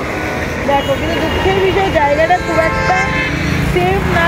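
A vehicle horn sounding as one steady note for about two seconds, starting about a second and a half in, over road traffic that rumbles louder near the end.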